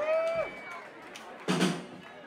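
Live rock band on stage: a single held note that bends up, holds and slides away, then a short loud crash about a second and a half in.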